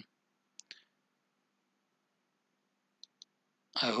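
Computer mouse clicking: a pair of clicks just over half a second in, then another quick, higher pair about three seconds in.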